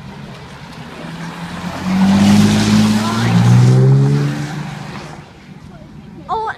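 Lotus Evora's V6 engine accelerating past, its pitch climbing, dropping at an upshift about three seconds in, then climbing again. It is loudest in the middle and fades away before the end.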